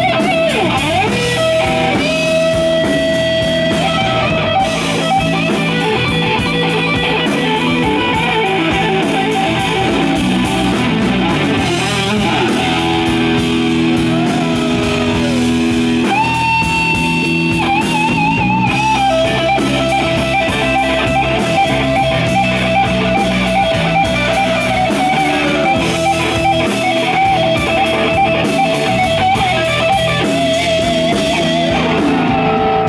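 Live blues-rock band playing: a Stratocaster-style electric guitar solos with long held, wavering vibrato notes over drums and bass guitar. About sixteen seconds in, the guitar holds a higher note for a couple of seconds.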